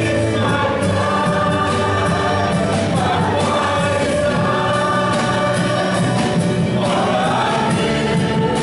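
Live contemporary worship music: a church worship band of acoustic guitar, keyboard, electric bass and drum kit accompanying a group of singers in a worship song, with long held notes.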